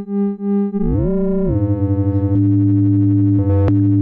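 Instruo CS-L complex oscillator's multiply output in AM mode: a tone pulsing in volume about three times a second. Its pitches then glide and settle into a steady, dense drone, with a short click near the end.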